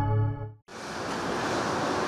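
The closing chord of a TV news station's ident jingle fades out about half a second in. After a brief gap, a steady, even rushing noise follows.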